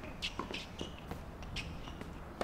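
Faint hard-court tennis rally sounds: a few short, sharp knocks from ball strikes and bounces, with players' shoes scuffing on the court.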